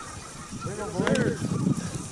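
A flock of geese honking, many overlapping calls that build to a loud cluster about a second in.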